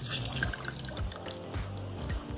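Background music with a steady low bass, over the small drips and trickle of orange juice squeezed by hand from an orange half into a plastic glass.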